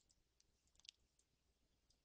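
Near silence: room tone with a few faint, scattered clicks, a small cluster of them a little under a second in.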